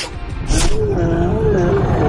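A long, loud, wavering yell, starting about half a second in, over dramatic trailer music.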